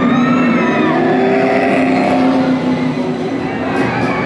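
Two Radiator Springs Racers ride cars racing past side by side, playing race-car engine sound effects whose pitch sweeps up and down as they go by.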